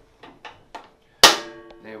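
Lid catch on a Hyundai HYCW1200E wet/dry vacuum's stainless steel drum snapping shut with one loud click a little over a second in, the metal drum ringing briefly after it. A few lighter clicks come before it as the catches are worked.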